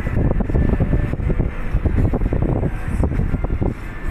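Wind buffeting a phone microphone from a moving car, over a low, steady rumble of road and engine noise.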